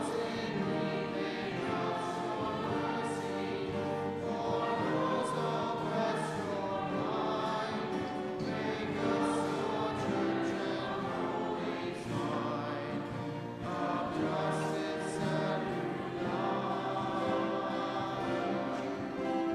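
A choir sings an offertory hymn, with several voices holding notes in harmony.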